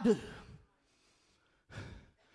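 A man's last word trailing off on a falling pitch, about a second of dead silence, then a short, sharp intake of breath near the end as he gathers himself to speak again.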